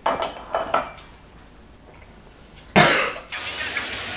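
A woman coughing in a few short bursts right after swallowing a spoonful of a thick blended drink, then a louder rush of noise about three seconds in, followed by a light clink.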